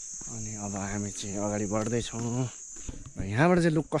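Insects droning steadily at a high pitch, growing fainter about three seconds in.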